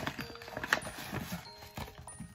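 Small white cardboard jewelry boxes being handled: a run of light clicks and knocks, the sharpest about three quarters of a second in, over faint background music.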